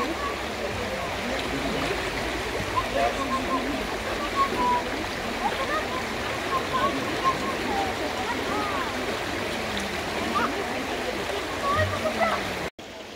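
Shallow river running over stones: a steady rush of flowing water.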